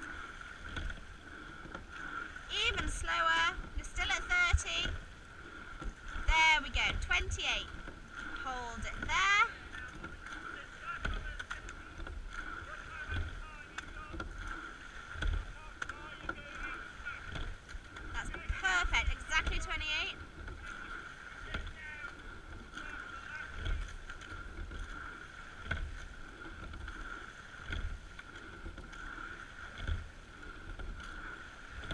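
Rowing shell under way: oars working the water and the boat running with a low knock about every two seconds as the crew strokes, over wind on the microphone and a thin steady high tone. A voice calls out in short bursts several times in the first ten seconds and again a little before twenty seconds.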